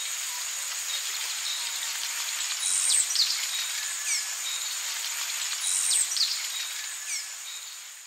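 Forest ambience: a steady high-pitched insect drone with short, descending bird whistles that recur about every three seconds, fading out near the end.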